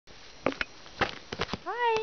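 A kitten gives one short meow near the end, its pitch rising and then holding. Before it come a few light clicks and taps.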